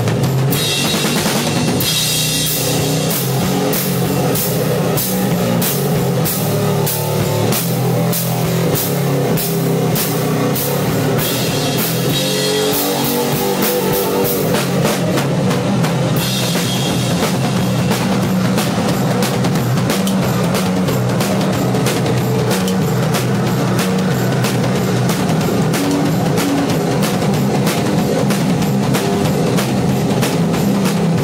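Loud rock band playing, a drum kit keeping a steady beat of regular hits over a continuous low bass drone.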